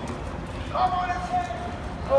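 A voice holds one long sung or called note from about a third of the way in until near the end, over steady outdoor crowd and street noise.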